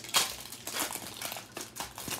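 Foil wrapper of a Pokémon trading card booster pack being torn open and peeled back by hand, crinkling throughout, loudest just after the start.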